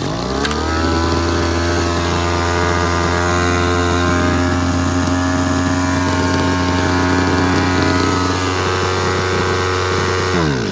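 Robin EC025 two-stroke engine on a small portable water pump, pull-started and catching at once, rising quickly to a steady run. Its speed begins to drop right at the end as it is shut off.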